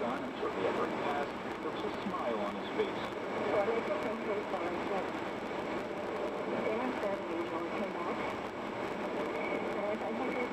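A news radio broadcast: a reporter talking, the voice thin and muffled as over AM radio.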